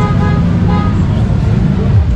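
Street traffic: a steady engine rumble, with a horn tooting in short, steady tones a few times.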